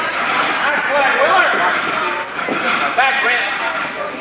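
Many voices of spectators and players calling out and chattering at once, overlapping, during an indoor youth soccer game.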